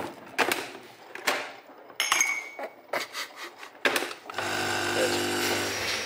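Clicks and knocks of a pod coffee machine being handled, with its lid shut and controls pressed. From about four and a half seconds in, its pump buzzes steadily as it brews.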